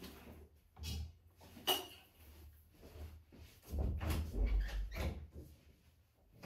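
Quiet rustling and handling of a sheet of paper as a folded letter is held and read, with a few soft knocks and a stretch of low bumps a little under four seconds in.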